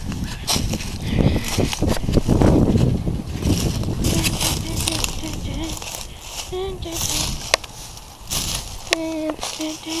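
Footsteps crunching and rustling through dry fallen leaves and twigs, with sharp snapping clicks. The crunching is loudest in the first few seconds.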